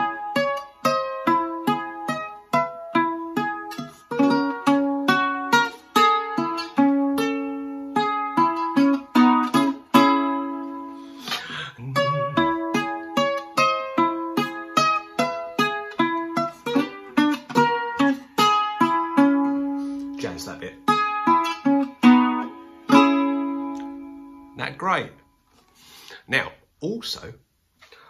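Lava U carbon-composite ukulele fingerpicked in a flowing run of single notes and arpeggios, played through its own built-in chorus effect so the notes ring and overlap. The playing thins out and fades near the end.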